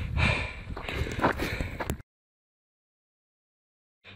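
A hiker breathing heavily while climbing a trail on foot. About halfway through, the sound cuts off abruptly to dead silence at an edit.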